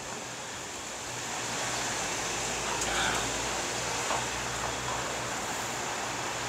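Steady background hiss of ambient noise with a faint low hum, and a few faint, brief distant sounds around the middle.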